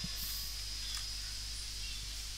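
Steady background hiss and low hum of a desk recording setup, with a thin high whine and one or two faint clicks.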